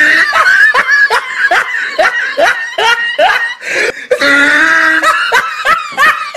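A person laughing in a quick run of short, rising 'ha's, about three a second, then a longer held vocal sound about four seconds in.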